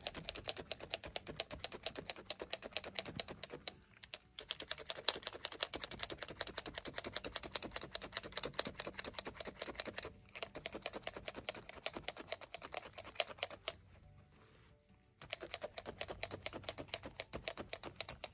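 Multi-needle felting tool jabbing rapidly into a flat layer of wool on a felting mat, a quick run of light clicks with brief pauses about 4 and 10 seconds in and a longer one near 14 to 15 seconds. The loose fibres are being felted together into a single firm sheet.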